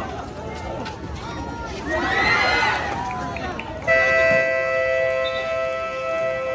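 Crowd at a basketball game yelling, swelling loudly about two seconds in. About four seconds in, the game buzzer sounds a steady, many-pitched electronic horn, marking the end of the third quarter.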